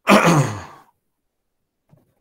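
A man's loud sigh: a noisy breath that drops in pitch and fades out within about a second.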